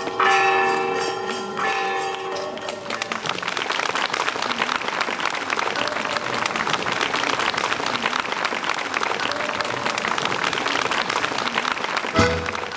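A folk choir sings the last chords of its song for the first two and a half seconds or so, then the audience breaks into steady applause.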